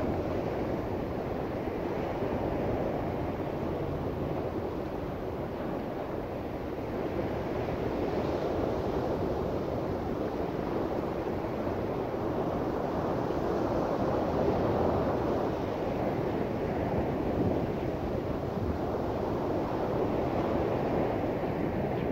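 Wind blowing across the camera microphone: a steady rushing, rumbling noise with no other distinct sound.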